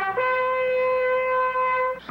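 A single long, steady note held on a horn-like wind instrument in a commercial jingle's soundtrack music, lasting nearly two seconds and cutting off just before the next words.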